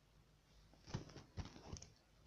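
Near-silent room tone with a few faint, short knocks and clicks about a second in.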